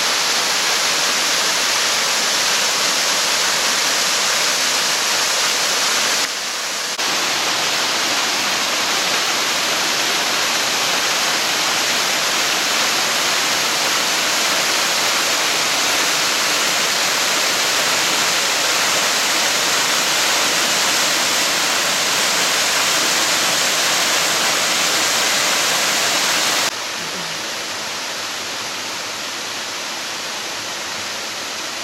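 A small waterfall pouring and splashing over rock ledges, a steady rush with a slight drop in level near the end.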